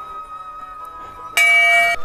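Soft flute background music, then about one and a half seconds in a hanging brass temple bell is struck and rings loudly with a bright, many-toned ring until the end.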